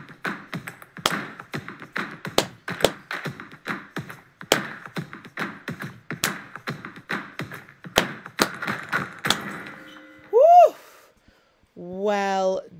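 Percussion play-along track: sharp claps and taps in several overlapping beat patterns over faint backing music. Near the end comes a short pitched sound that rises and then falls, the loudest moment, and the track cuts off.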